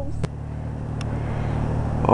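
A car engine running steadily, with road noise swelling toward the end as a car approaches on the snowy street. Two brief clicks sound early and about a second in.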